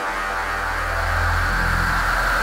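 Forest psychedelic trance in a breakdown with no beat: a steady low drone under a hissing wash of noise.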